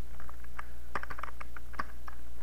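Typing on a computer keyboard: a quick, uneven run of about a dozen key presses.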